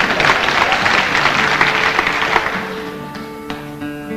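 Live audience laughing and clapping, dying away about two and a half seconds in, as a 12-string acoustic guitar rings with sustained notes and a few single plucked strings near the end.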